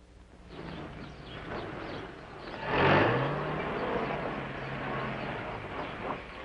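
Moving-van truck engine pulling away: the engine note rises as it gets under way, loudest about three seconds in, then runs on steadily as the truck drives off.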